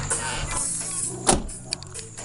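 Car sound with music playing in the background, and a single sharp knock just past halfway through.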